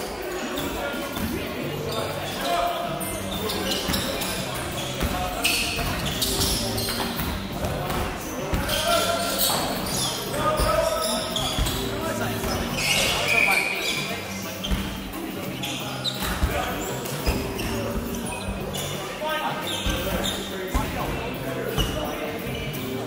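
A basketball bouncing on a wooden hall floor during play, mixed with players' voices calling out, with the echo of a large sports hall.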